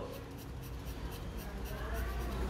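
Graphite pencil hatching on drawing paper: a quick run of short, scratchy shading strokes, several a second, laying in a shadow area. A low rumble runs underneath.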